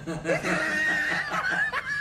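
People laughing, with a high, drawn-out note held through the middle.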